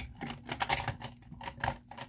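Irregular light clicking and clattering of makeup items being moved about and picked through while searching for a makeup brush.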